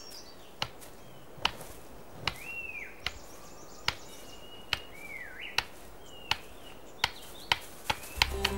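Male satyr tragopan in courtship display: a series of sharp clicks at a steady beat of roughly one a second, with a few short whistled bird calls that dip and rise in pitch.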